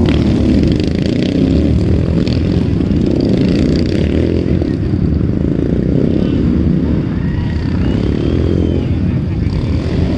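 Dirt-track racing motorcycles running around the track, heard as a dense, steady low rumble with background voices mixed in.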